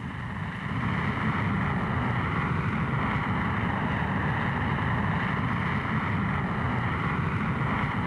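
Steady jet aircraft noise in flight: a low rumble under a hissing rush of engine and air. It swells up in the first second, then holds level.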